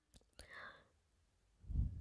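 Faint breathy hiss about half a second in, then a soft low thump near the end.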